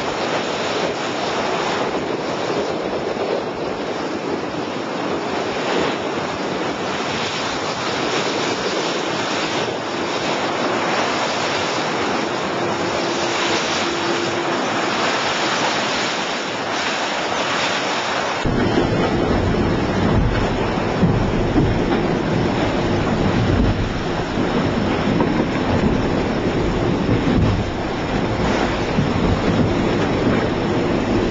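Wind buffeting the microphone over rushing water and bow spray as a Class40 racing yacht drives hard through rough seas. About two-thirds of the way through the sound changes abruptly to a deeper, heavier rumble with a faint low hum.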